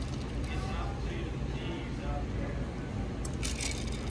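Restaurant room sound: a steady low hum under faint voices, with a short burst of clicking and clattering near the end.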